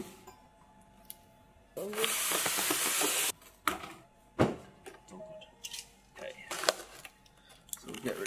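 Cardboard box lid being slid off an RC plane box, a steady scraping hiss lasting about a second and a half, followed by sharp knocks and rustles of the cardboard and polystyrene foam packing being handled.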